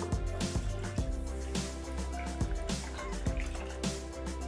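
Water poured from a glass jug into the stainless-steel mixing bowl of a Thermomix, heard under background music with a steady beat.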